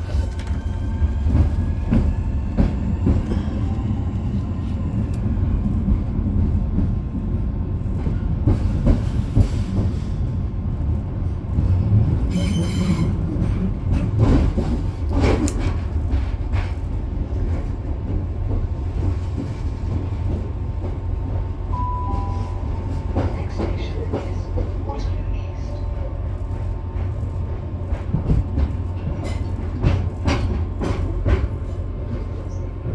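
Cabin interior of a Class 465 Networker electric multiple unit under way: a steady low rumble of wheels on rail, with a rising motor whine as it picks up speed at the start and scattered clicks over rail joints and points. A brief high wheel squeal comes about twelve seconds in.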